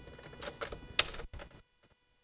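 Computer keyboard keystrokes: a few quick key taps, the sharpest about a second in.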